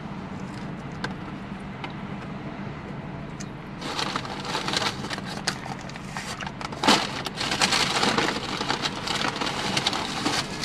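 Paper napkin and paper food bag rustling and crinkling, starting about four seconds in, with louder crackles around seven and eight seconds. A steady low hum runs underneath throughout.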